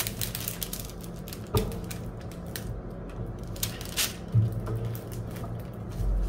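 Handling noises as a clip is fastened onto the edge of a diamond painting canvas: rustling of the canvas and a series of light clicks, the sharpest about one and a half seconds in.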